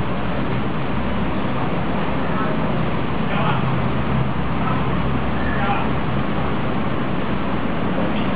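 Steady background noise with a low hum, with faint voices talking briefly now and then.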